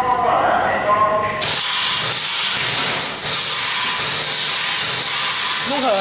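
Airsoft gun's gas rushing out in a steady hiss, starting about a second and a half in and lasting about four seconds, with a brief dip partway through.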